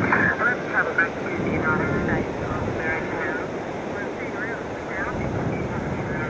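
Faint, thin speech from a Radio Australia shortwave broadcast on 9580 kHz playing through a Tecsun PL-880 portable radio's speaker, over a steady rush of ocean surf.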